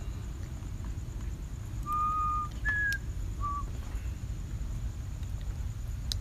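Three short whistled notes over a low, steady room rumble: a held note of about half a second, a slightly higher, shorter note, then a brief lower one.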